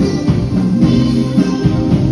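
Live Romani band playing an instrumental passage: keyboard chords, electric guitar and drum kit with a steady beat.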